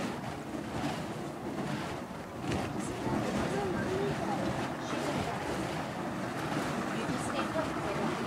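Burning monkey-fist fire poi swung in circles, making a steady rushing, wind-like whoosh from the flames moving through the air.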